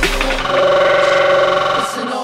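Drum and bass breakdown: the drums drop out and the sub-bass fades, then a single held, slightly wavering tone sounds for about a second and a half before the vocal section.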